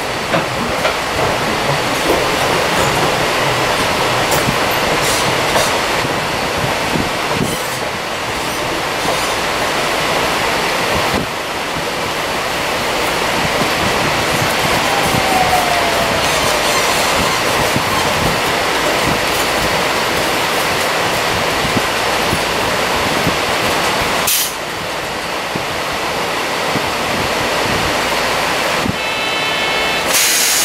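Cabin running noise of a Seibu 8500 series Leo Liner rubber-tyred guideway train: a steady rumble and hiss of tyres and drive, with occasional knocks. A short falling squeal comes about halfway through.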